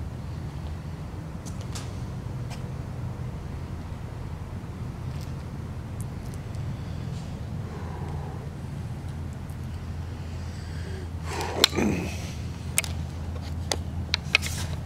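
Steady low rumble of distant road traffic, with faint scattered ticks. Near the end a single loud bang, followed about a second later by a sharper click.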